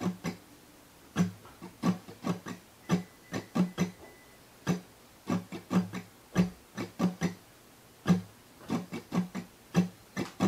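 Acoustic guitar strummed at full speed in a repeating down-down, up-down-up-down-down, down-up pattern. The strums are short and crisp, in quick clusters with brief quiet gaps between them.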